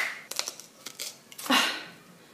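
Plastic avocado tool worked into a cut avocado and its pit: a sharp click at the start, a few faint clicks, then a short crunching scrape about one and a half seconds in as the pit crumbles.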